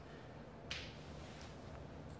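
Low steady hum with one short, sharp sound about two-thirds of a second in, fading quickly.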